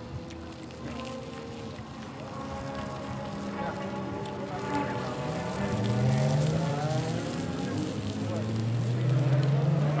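A car engine running and revving, its pitch rising slowly and growing louder over the second half.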